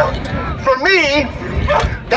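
A police K9 dog barking: one drawn-out, rising-and-falling bark about a second in, over crowd chatter.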